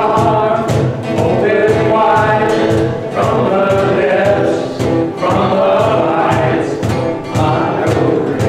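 Contemporary worship band playing with a steady beat while a group of voices sings the song together.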